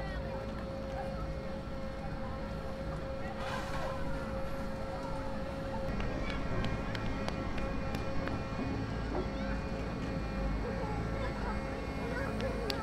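The Great Elephant of Nantes, a 48-tonne wooden mechanical elephant moved by hydraulic cylinders, walking. Its machinery runs with a steady drone and a constant whine, and clicks and knocks come from its moving legs from about halfway on.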